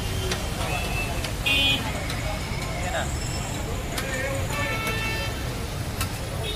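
Roadside street noise: a steady traffic rumble with voices, and a short vehicle horn toot about a second and a half in. Faint taps of a metal spatula on a steel tawa can be heard now and then.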